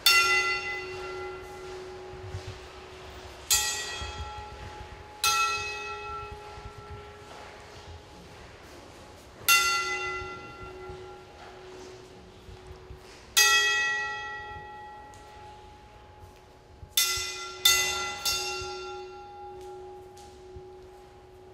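A bell-like metal tone struck eight times at uneven intervals, the same pitch each time, each strike ringing on and fading over a few seconds; the last three strikes come in quick succession near the end.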